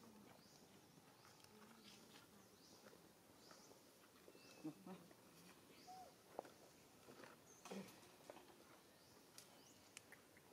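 Faint animal sounds: a short high chirp repeating about every half second, with a few sharp clicks and soft low calls in the middle.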